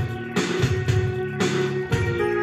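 Yamaha PSR-520 electronic keyboard playing: sustained chords that change about once a second over a pulsing bass line and drum rhythm.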